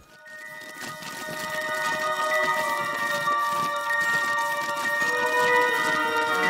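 Channel intro music fading in: sustained, ringing tones that swell steadily in loudness.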